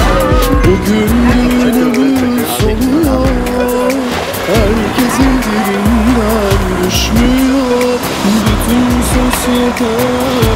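Background music: a wavering, ornamented lead melody over a deep, pounding bass beat.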